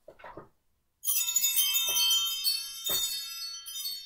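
Bright metal chimes struck about a second in and again twice at roughly one-second intervals, each strike ringing on with many high overtones and slowly fading.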